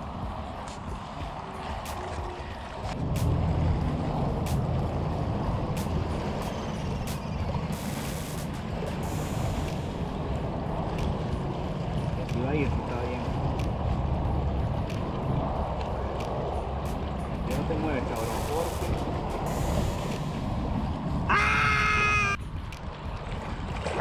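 Wind rumbling on the microphone on an open shoreline, louder from about three seconds in, with scattered small clicks of handling. Near the end comes one short call of several stacked tones.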